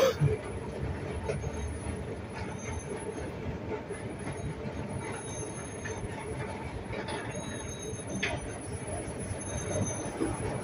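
Heavy demolition machinery working: a steady rumble with faint, high metal-on-metal squeals. A sharp knock comes right at the start.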